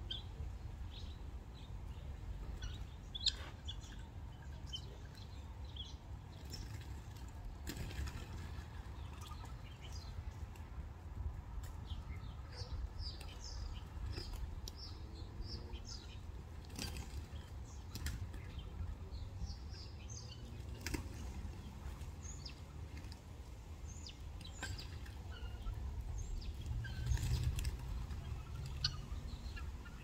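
Scattered short, high bird chirps, with a dense run of them about halfway through, and a few sudden wing flaps from a mixed ground-feeding flock of helmeted guineafowl and doves, over a low steady rumble.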